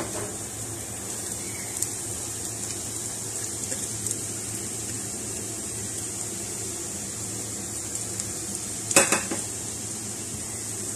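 Chopped onions and green chillies frying in oil in a nonstick pan, a steady sizzle. Chopped boiled egg is tipped in, with a knock right at the start and a quick cluster of knocks against the pan about nine seconds in.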